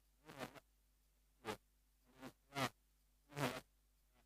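A man's voice heard only in short, choppy fragments, five or six brief syllable-like bursts with almost nothing between them.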